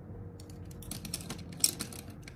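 Quick run of small clicks and clatters of makeup items being handled and set down on a tabletop. The clicks start about half a second in and come thick and irregular, the sharpest one about one and a half seconds in.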